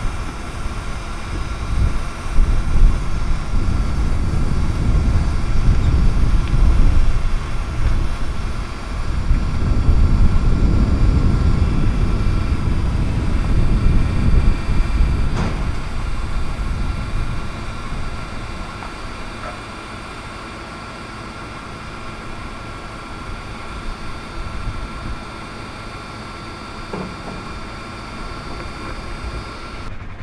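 A Yale forklift's engine idling steadily, with wind buffeting the microphone, louder through the first half. There is a single sharp click about halfway through.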